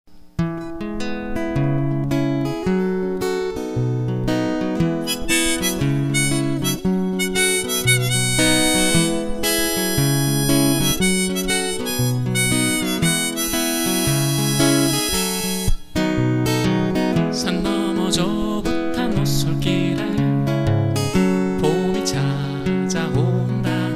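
Instrumental introduction of a Korean folk-style song: acoustic guitar with a sustained melody line of held notes on top. There is a brief break in the sound a little past the middle.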